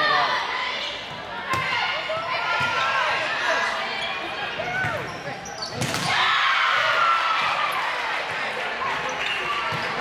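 Volleyball being struck during a rally in an echoing gymnasium: a few sharp slaps of hands on the ball, the loudest about six seconds in, over continuous chatter and calls from players and spectators.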